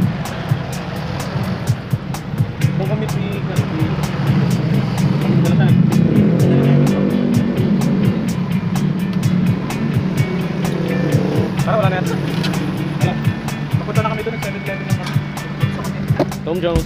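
Steady drone of a motor vehicle running, with music playing over it and sharp, evenly spaced ticks throughout.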